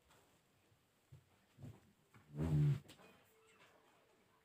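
A single short call with a clear pitch, about two and a half seconds in, over otherwise quiet sound with a few faint soft noises.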